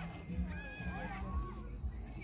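Children's high-pitched voices calling out in short bursts, with a thin, steady high whine running underneath.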